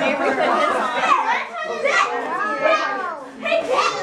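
Children's voices talking, with no clear words.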